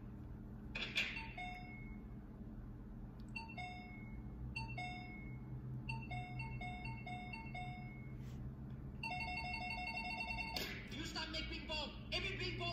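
Electronic door chime going off, a long string of short high beeps alternating between two pitches that quickens into a rapid trill near the end.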